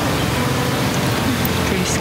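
A steady, even hiss with no separate sounds in it.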